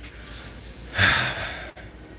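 A single short, loud breath from a man close to the microphone, about a second in, over a quiet room background.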